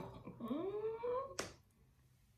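A woman laughing, with long gliding vocal sounds, ending about one and a half seconds in with a brief sharp sound.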